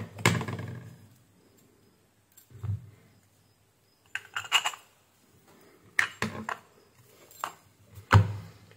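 Parts of a dismantled brushless fan motor being handled and fitted together: the metal-shafted rotor and the motor's housing clicking and knocking against each other. The sounds are a few separate taps and light clatters, with a dull knock a few seconds in and a quick cluster of clicks around the middle.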